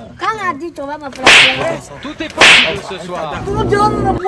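Two loud, sharp, noisy cracks about a second apart, like whip cracks or slaps, between brief voice sounds.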